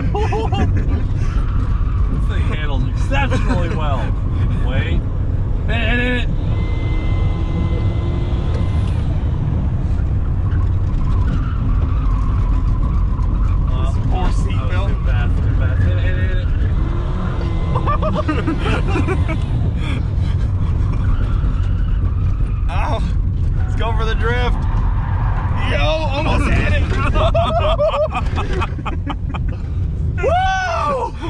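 Chevrolet Cobalt fitted with two electric turbochargers, heard from inside the cabin while driving on a track: a steady, loud engine and road rumble, with voices and laughter over it.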